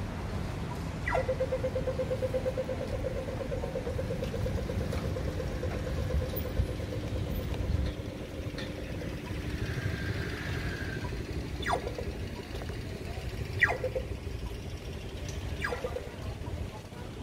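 Pedestrian crossing signal beeping rapidly at one steady pitch while the green man shows. It starts about a second in and fades after about seven seconds. Road traffic rumbles underneath, with a few short falling chirps later on.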